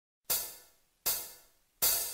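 Drum count-in played on a hi-hat cymbal: three hits about three quarters of a second apart, starting about a quarter second in, each ringing and dying away.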